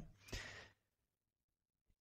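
A speaker's short breath out or sigh, a fraction of a second in; the rest is near silence.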